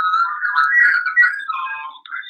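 Audio echo on a video call with a speakerphone line: a warbling, whistle-like sound squeezed into a narrow pitch band, wavering up and down, the echo the hosts complain of.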